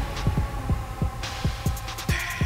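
Outro music: a fast run of deep kick-drum hits, about five a second, each dropping in pitch, over a sustained synth drone.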